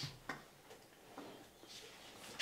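A few faint, small clicks in a quiet room: one sharper click about a third of a second in, then softer ticks.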